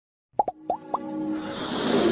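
Logo-intro music: four quick plops, each dropping sharply in pitch, within the first second, then a swelling build-up.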